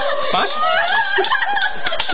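People laughing and snickering, with wavering, high-pitched voices.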